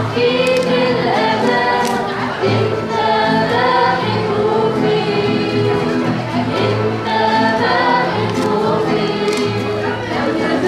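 Voices singing an Arabic Christian hymn together, with piano and guitar accompaniment, in steady unbroken phrases.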